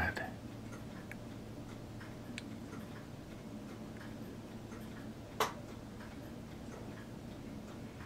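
Quiet room with a faint steady hum, a few light ticks, and one sharp click about five and a half seconds in.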